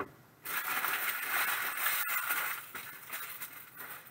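Foil trading-card pack wrappers crinkling and rustling as they are gathered up by hand, loud for about two seconds and then dying down to a few small rustles.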